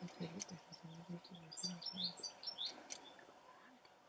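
Small birds chirping in short, falling notes, mostly in the middle of the stretch, over a run of short, low, even-pitched notes repeating about three times a second that stops a little past halfway.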